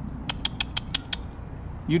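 A quick run of about seven sharp, evenly spaced clicks, lasting under a second.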